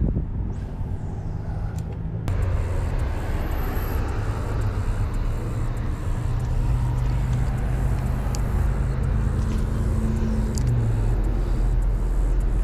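Road traffic going by: a steady rumble of passing cars and trucks that grows louder about two seconds in, with a low engine drone holding through the second half.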